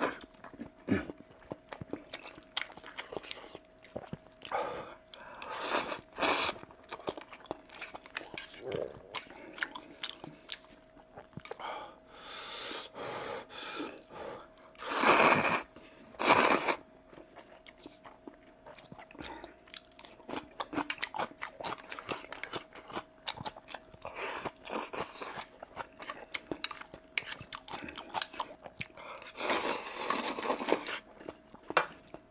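Close-miked eating of kimchi ramen: wet chewing and crunching clicks throughout, with a few loud noodle slurps around the middle.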